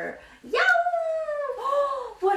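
Howling, wailing cries like a monster or animal: one high wail rises sharply about half a second in and is held, sagging slowly, then a second, shorter wail comes near the end.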